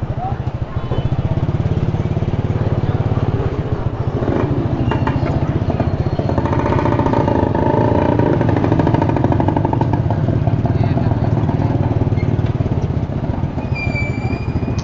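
Small motorcycle engine running steadily at low speed, a continuous low rumble. In the middle a second engine note rises over it as another motorcycle rides alongside.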